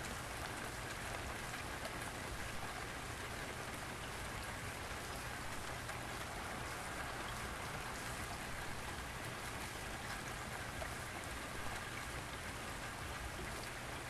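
Steady rain falling, an even hiss with scattered small drop ticks.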